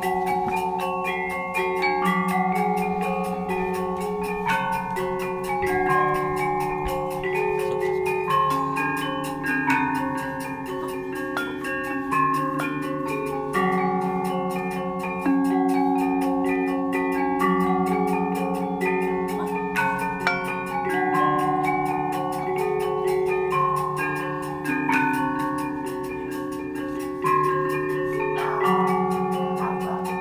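Selonding, the Balinese gamelan of iron keys struck with wooden mallets, playing a continuous stream of ringing metallic notes. Low and high pitches overlap and sustain for a second or more each.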